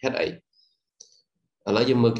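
A man's voice speaking Vietnamese briefly, then two faint computer mouse clicks about half a second apart, then speech again near the end.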